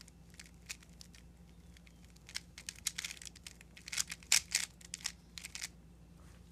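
A 3x3 speedcube's plastic layers turned quickly by hand, an irregular run of clicks and rattles as the R-perm algorithm is executed, densest and loudest about four seconds in, stopping just before the end as the cube comes solved.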